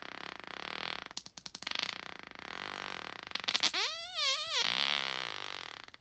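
A long human fart: a hissing stretch broken by a rapid rattle about a second in, then a squeaky, pitched stretch whose pitch wobbles up and down around the middle. It stops abruptly just before the end.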